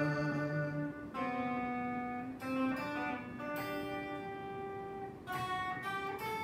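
Semi-hollow Telecaster-style electric guitar played through an amp, picking a slow melody: a new note or chord about every second, each left to ring.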